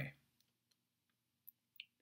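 Near silence with two short, faint clicks near the end, made while operating drawing software to open its pen colour and size menu.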